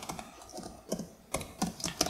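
Computer keyboard being typed on: a handful of separate keystrokes at an uneven pace.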